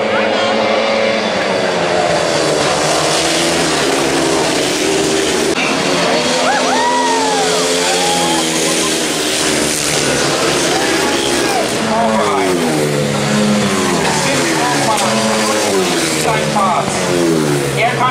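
A pack of grass-track racing motorcycles at full race, several engines running together, their notes repeatedly rising and falling as the riders open and shut the throttle through the bend. In the second half the revving swoops come in quick succession.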